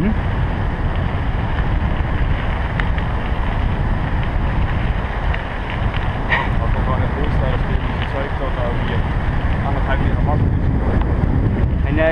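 Steady low wind rumble buffeting a moving action camera's microphone, with faint voices near the end.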